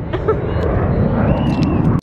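Outdoor background noise: a steady low rumble with faint distant voices.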